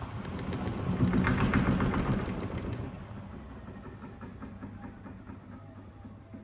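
Miele Professional PW 6065 Vario commercial washing machine in its interim spin after the main wash: the drum and motor run with a rhythmic mechanical clatter over a steady low hum. It grows louder about a second in, then dies away over the last few seconds as the spin winds down.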